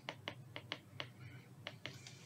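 Pen tip tapping and clicking on a tablet screen while handwriting: a string of faint, sharp, irregular clicks.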